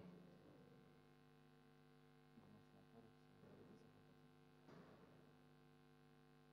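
Near silence with a faint steady electrical hum, a few faint short sounds rising briefly above it.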